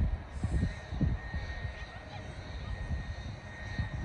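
Outdoor field ambience: an irregular low rumble, typical of wind on the microphone, is heaviest at the start. A steady high whine comes in about a second in, with faint distant shouts from players over it.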